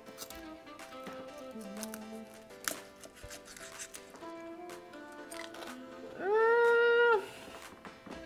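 Background music, with a chef's knife crunching now and then through the crackling skin of roast pork belly on a wooden cutting board. A loud held note sounds for about a second near the end.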